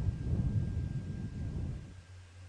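A low rumbling noise that fades out near the end.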